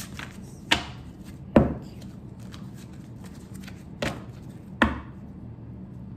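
Four sharp knocks of a tarot card deck and cards against a tabletop, in two pairs: two in the first two seconds and two more about four seconds in.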